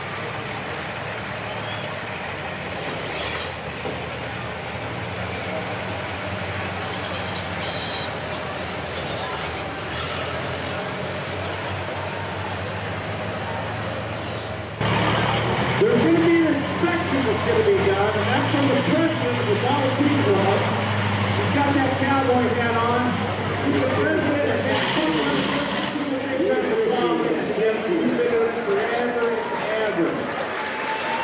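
A Model T Ford race car's four-cylinder engine running at a steady idle. About halfway through, it gives way to louder talk and voices over a steady low hum.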